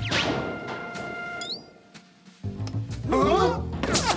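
Cartoon soundtrack of music and sound effects: a sudden crash-like hit with a falling sweep, held music notes, and a short rising chirp about a second and a half in. After a brief lull the music comes back with a wavering, warbling sound, and another sharp hit lands at the end.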